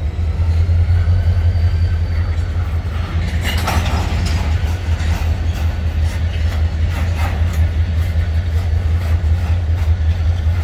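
Florida East Coast Railway freight cars (steel hoppers and tank cars) rolling slowly past on the rails. There is a steady low rumble from the wheels and track, a faint high squeal in the first few seconds, and bursts of clatter about three and a half seconds in and again around seven seconds.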